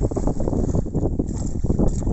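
Wind buffeting the microphone, a rough, uneven rumble, with small waves washing onto a rocky shore.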